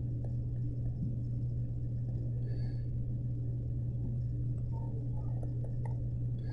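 Steady low electrical hum over faint background noise.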